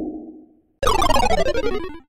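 Edited-in comic sound effect: a low whoosh fades out, and after a short gap a buzzy tone with many overtones slides steadily down in pitch for about a second.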